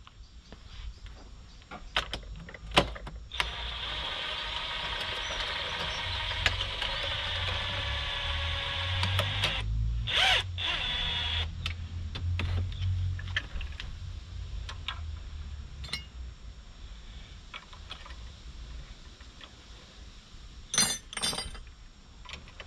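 Metal knocks and clinks from a fork spring compressor being fitted to a motorcycle fork leg held in a vice, the sharpest knock about three seconds in and light clinks of a spanner on the fork cap near the end. From about three seconds in, a steady machine drone runs for about eight seconds.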